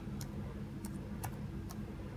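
Computer keyboard keys pressed one at a time, about four separate key clicks spread across two seconds: slow typing.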